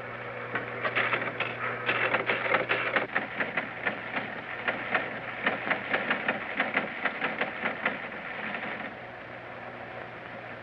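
Teletype machine printing: a rapid, irregular clatter of clicks that thins out near the end.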